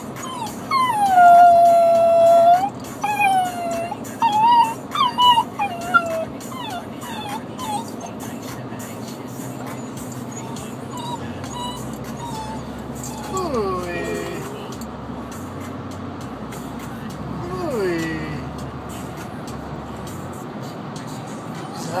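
Four-month-old puppy howling and whining while separated from his owner. One long howl comes near the start, followed by several shorter whines and yips, then a few fainter falling whimpers later on.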